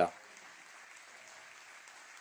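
Faint, steady applause from a small group of people clapping.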